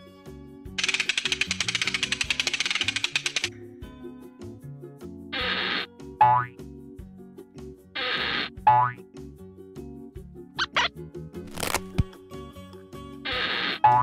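Cartoon background music with added comic sound effects. A fast rattling effect lasts about three seconds. Then come three short effects, each a hiss followed by a falling, wobbly tone, and two quick swishes in between.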